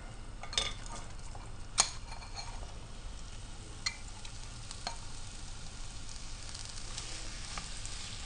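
Sliced onions frying in hot sunflower oil in a frying pan, a steady sizzling hiss. A few sharp clicks break through it, the loudest about two seconds in.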